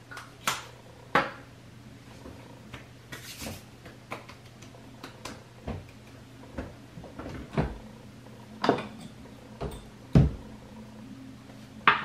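Irregular clicks, taps and soft knocks of makeup items and containers being handled close to the microphone, about a dozen over the stretch, several with a dull thud, the loudest near the end.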